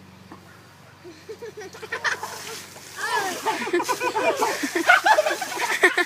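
Ice water splashing down from a tipped bucket over two people. Voices yell and laugh from about three seconds in, growing louder toward the end.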